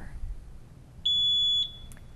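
Quiz-bowl lockout buzzer giving one steady high-pitched beep about half a second long, about a second in: a contestant buzzing in to answer.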